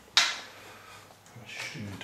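A single sharp click of LEGO plastic as a hinged side armour panel of the AT-TE model is pushed back into place, just after the start, followed by faint handling of the bricks.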